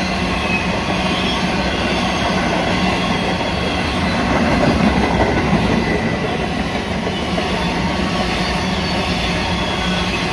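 Hopper wagons of a long freight train rolling past at close range: a steady rumble of steel wheels on the rails, swelling slightly about halfway through.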